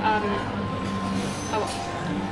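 A steady low hum with a faint held high tone through the middle, under a brief spoken 'um' at the start and 'oh' near the end.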